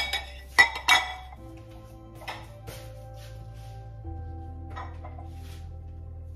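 Glassware clinking: three sharp clinks in the first second, then a few fainter ones, as a glass dish is handled. Soft background music with held notes plays underneath.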